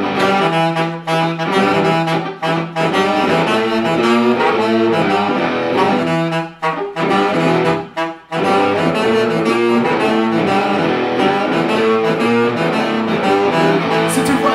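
Saxophone playing a melodic line of changing notes over the band's acoustic accompaniment. The line breaks off briefly between phrases about six and eight seconds in.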